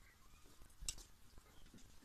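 Faint handling noise of artificial vine with wire stems being tied onto a table: small rustles and clicks, with one sharper click about a second in.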